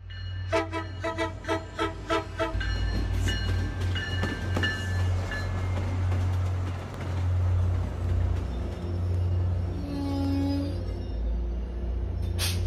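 Commuter train on the tracks with a steady low rumble. A bell rings in quick strokes, about four a second, for the first two seconds or so, and a short horn note sounds about ten seconds in.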